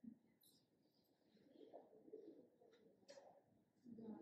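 Near silence: quiet room tone with faint, indistinct murmurs and a soft click about three seconds in.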